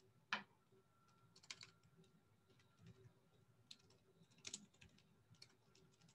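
Faint, scattered computer keyboard keystrokes and clicks, one or two at a time with short pauses between, as a query is edited.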